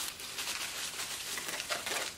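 Plastic bubble wrap rustling and crinkling as it is pulled off a wrapped object.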